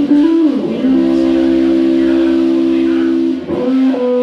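Live blues band with guitar: a short falling melodic phrase, then a chord held steady for about two and a half seconds, and the melody moving again near the end.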